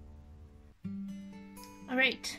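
Background music: one track fades out, and after a brief gap new music with plucked acoustic guitar notes starts about a second in.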